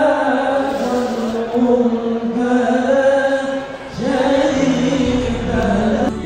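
Islamic devotional chant sung in long, held, slowly wavering notes, with a short break about four seconds in; a low bass accompaniment joins near the end.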